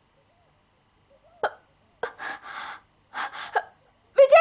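A woman gasping for breath: a sharp click about a second and a half in, then two heavy, breathy gasps, the second shorter.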